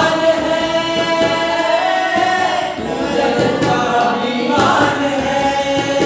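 Several men singing a Hindi song together in long, held notes. A harmonium accompanies them and a tabla keeps time.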